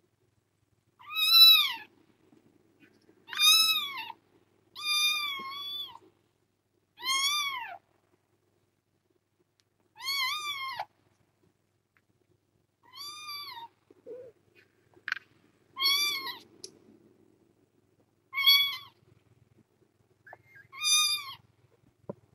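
Kitten meowing over and over: about ten high-pitched meows a couple of seconds apart, each rising and then falling in pitch.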